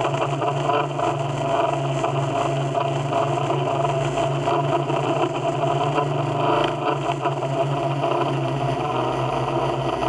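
Multirotor drone's motors and propellers humming steadily in flight, heard from the camera mounted on the drone itself.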